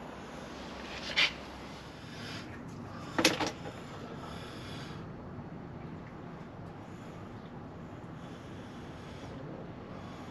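Quiet workshop background with two short knocks of tools being handled, about one second and three seconds in, the second the louder.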